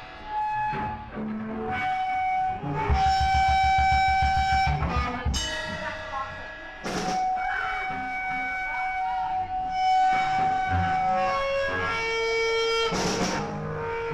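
Live rock band with electric guitars holding long sustained notes over drums. A fast, even run of drum hits comes about three seconds in and lasts about two seconds.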